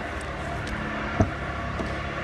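Steady low outdoor hum with a single sharp click about a second in, the Fiat 500's driver's door latch releasing as the door is opened.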